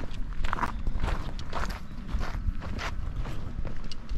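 Footsteps walking on a dry dirt path, a step about every half second, over a low steady rumble.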